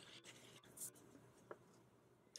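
Near silence with faint handling rustles. A short hiss comes just under a second in, and a small tick follows about half a second later.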